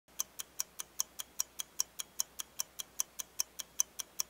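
Even, rapid ticking like a clock, about five ticks a second, with no other sound.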